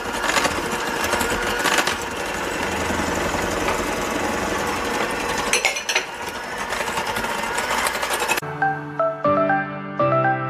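Electric hand mixer running steadily in a glass bowl, its beaters whipping creamed butter and sugar as eggs are beaten in, with a few knocks against the bowl. About eight seconds in, the mixer sound cuts off abruptly and is replaced by background music with light piano-like notes.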